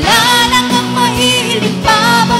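Worship band playing a Tagalog praise song: female and male voices singing together over electric guitar and keyboard with a steady beat.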